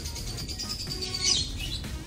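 Background music, with a thin high note that slowly falls in pitch over the first second and a half.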